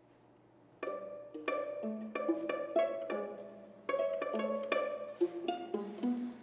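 String quartet starting to play about a second in: a quick run of short, sharply attacked notes, a brief gap just before four seconds, then more of the same.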